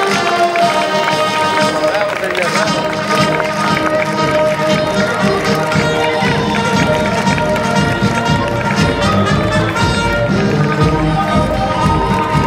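Parade band music playing while a column of schoolchildren marches on the street, their footsteps beneath the music; the low thuds grow denser from about halfway through.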